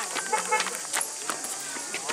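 Footsteps of several people climbing stone steps: irregular taps and scuffs.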